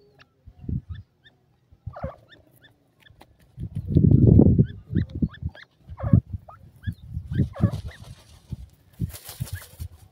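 Grey francolins giving soft, short chirping calls, a few a second. Under the calls are low thumps, loudest as a rumble about four seconds in, and a burst of rustling comes near the end.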